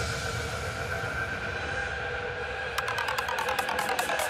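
Psytrance breakdown with no kick drum: held synth pad tones. About three quarters of the way in, a fast pulsing synth sequence with falling pitch sweeps starts up.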